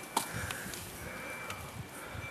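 Quiet background hiss with a couple of faint clicks.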